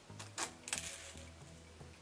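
A few short, sharp clicks from handling a small plastic Baby Pop lollipop and its cap, over faint background music.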